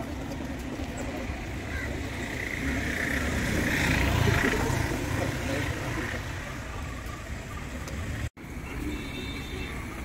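Street ambience with a motor vehicle passing, growing louder to a peak about four seconds in and then fading, under the voices of people nearby. The sound drops out for a moment a little past eight seconds.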